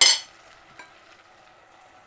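A sharp metallic clink against the stainless steel cooking pot, ringing briefly, right at the start, with a smaller tick a little under a second in. After it, only the faint, steady sizzle of the curry cooking in the pot.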